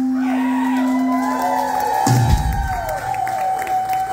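A live rock band's last sustained chord ringing out, ended by a final low hit about two seconds in, while the audience cheers and whoops.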